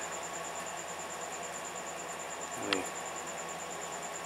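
A cricket chirping steadily: a high, rapidly pulsing note over a faint low background hum.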